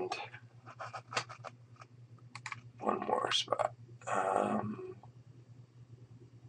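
Computer keyboard and mouse clicks, sharp and scattered, with two short muttered voice sounds about three and four seconds in, over a steady low electrical hum.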